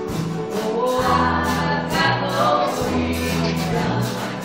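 Gospel song performed live: a singing voice over sustained bass notes and a steady drum beat.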